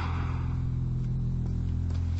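A steady low-pitched drone that holds unchanged.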